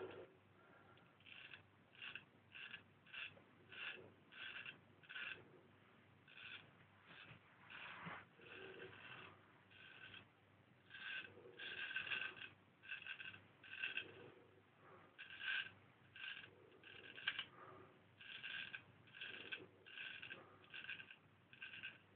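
Marshall Wells Zenith Prince straight razor scraping stubble through lather in faint, short strokes, about two a second, in runs with brief pauses.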